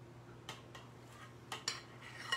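A few faint, light clicks and taps of a spoon and dishes on a kitchen counter, a pair about half a second in and another pair about a second and a half in, over a low steady hum.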